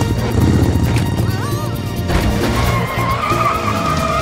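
Cartoon motorbike sound effects over background music: the engine runs with a rapid low pulsing for about two seconds. After a sudden change halfway through, a long wavering squeal follows, like tyres skidding.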